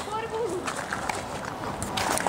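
Hurried footsteps with rustling and handheld-camera handling noise, as someone moves quickly along a path. A faint voice is heard briefly at the start.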